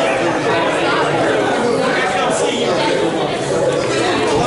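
Many people talking at once: steady overlapping chatter of a crowd of conversations, with no single voice standing out.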